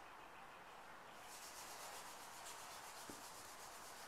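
Faint rubbing and handling noise over low room hiss, with a single soft tick about three seconds in.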